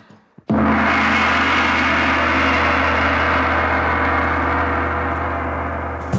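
A gong struck once about half a second in, after a brief silence. It rings on loud and full, with a steady low hum under it, and slowly dies away as the opening of a rock track.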